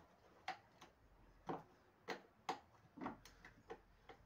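Faint, irregular clicks and taps of hands working the plastic and metal parts inside an opened washing machine, about a dozen sharp knocks in four seconds.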